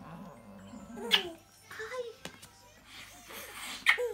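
Soft, close voice sounds: a low murmur, then a short pitched sound in the middle, with a sharp click about a second in and another just before the end, the second one after a breathy hiss.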